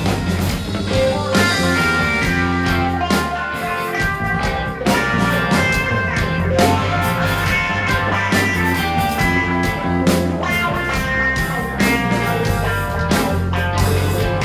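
Live rock band playing: electric guitar over bass guitar and a drum kit, at a steady loud level.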